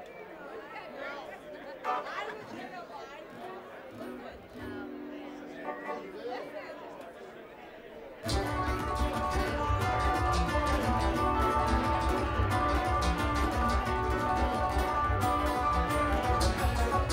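Audience chatter with a few held instrument notes. About eight seconds in, a bluegrass string band of acoustic guitar, banjo and bass suddenly starts a song at full volume over a steady bass beat.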